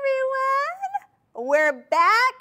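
A woman's high-pitched, drawn-out excited vocal exclamation in a sing-song greeting. There is one long gliding call over the first second, then a shorter call rising in pitch near the end.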